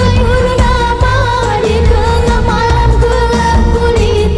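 A girl's amplified singing voice through a microphone, holding long, ornamented notes in an Asian-style song over backing music with a heavy bass.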